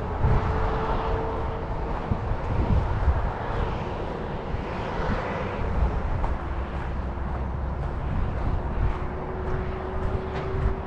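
Low rumble of wind and movement on the microphone while travelling along a dirt trail, with a steady hum that comes and goes: once near the start, and again from about two-thirds of the way in.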